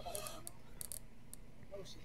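Faint, low speech from a host's voice picked up by a headset microphone, broken by a few short, sharp hissy clicks.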